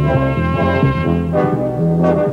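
Live jazz with a brass ensemble of trumpets, trombones and horns holding sustained chords over a low bass line.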